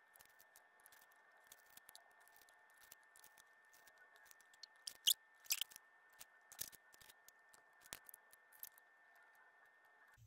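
Faint, scattered clicks and ticks of paper stickers being peeled off a sheet and pressed onto planner pages, over a low steady hiss. The few louder clicks fall around the middle.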